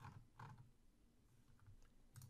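Near silence: quiet room tone with a few faint, brief ticks.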